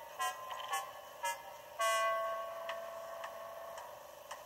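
Steam engine whistles heard through a television's speaker: three short toots, then one long steady whistle lasting about two seconds.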